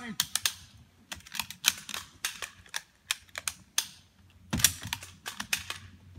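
Toy guns firing: an irregular run of sharp snapping clicks, with a thicker burst about four and a half seconds in.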